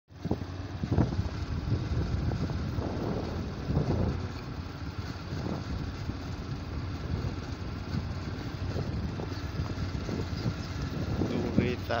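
Motor scooter being ridden along a road: a steady low rumble of its engine and the rush of air past the microphone, with uneven louder gusts.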